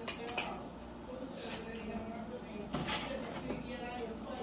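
Metal cans being handled on a kitchen counter: a few sharp metallic clicks and clinks, the loudest near three seconds in.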